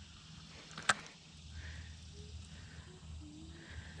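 Quiet lakeside ambience: a low steady rumble with one sharp click about a second in, and a few faint short tones near the end.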